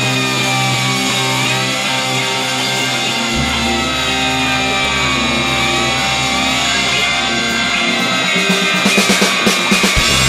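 Instrumental rock music led by guitar. A deep low note comes in after about three seconds, and a run of quick, evenly spaced drum hits starts near the end.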